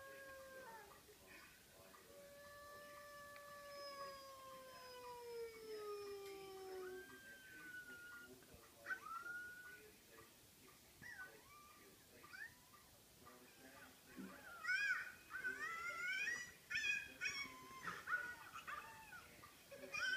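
A dog howling: one long call that falls slowly in pitch a couple of seconds in, then a run of short rising-and-falling whines that come faster and louder in the last few seconds.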